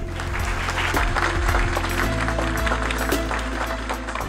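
Audience applauding, many hands clapping over steady background music.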